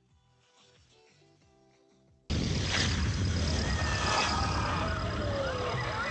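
A shortwave broadcast heard faintly through noise, with music playing. About two seconds in, it gives way abruptly to loud shortwave static: a rushing hiss and crackle, with wavering whistles that slide up and down in pitch and a thin steady high tone.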